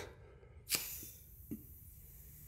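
A sharp click as a valve on a newly installed compressed-air line is turned open, followed by a faint fading hiss of air and a second, softer click.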